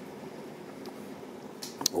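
Steady background noise of a maple-sap evaporator boiling, with a few short sipping sounds near the end as a hot drink is sipped from a cup.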